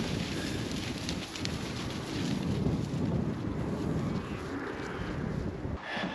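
Wind buffeting an action camera's microphone outdoors, a steady low rumble rising and falling slightly.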